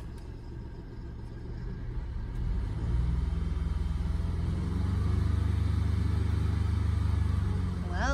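Low, steady rumble of a motor vehicle engine, swelling about two to three seconds in and then holding.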